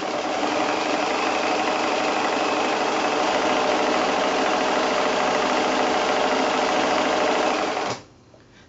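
Sewing machine running fast and steadily while free-motion quilting a small meander stitch, stopping suddenly right at the end.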